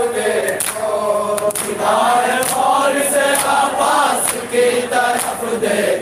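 A group of men chanting a noha, a Shia mourning lament, in unison, with sharp hand-on-chest slaps of matam about once a second keeping the beat.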